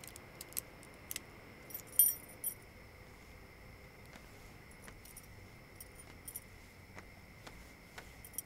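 Light metallic jingling and clicking, loudest in a short cluster about two seconds in, with scattered softer clicks before and after. A faint steady high trill of crickets runs underneath.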